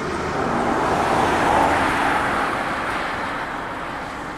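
A car passing by on the road, its noise swelling to a peak about a second and a half in and then fading away.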